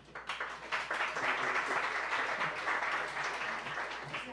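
Audience applauding: many hands clapping together, swelling within the first second and tapering off near the end.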